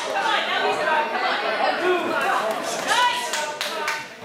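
Ringside voices of spectators calling out and chattering, with a few short sharp smacks near the end.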